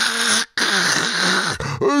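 A man's voice making a hoarse hissing noise, a short one and then, after a brief break, a longer one of about a second.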